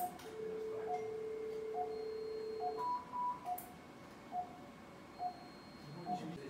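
Operating-theatre patient monitor beeping at a steady pulse, about one beep a second. Over it, a surgical energy sealing device gives a steady activation tone for about two and a half seconds while it seals tissue, then two short higher beeps that signal the seal is complete.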